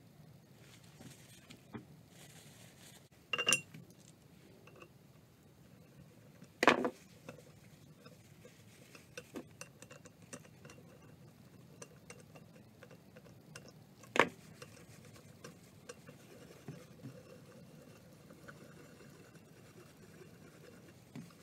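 Hand tools and metal parts handled on a workbench: three sharp clinks or knocks spread a few seconds apart, among quiet rustling and small clicks.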